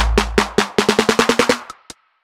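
Electronic drum-machine beat from a software instrument, broken up by a glitchy 'chaos' effect into a rapid stuttering roll of about a dozen hits a second over a fading deep bass kick. The roll cuts off suddenly, with one last click near the end.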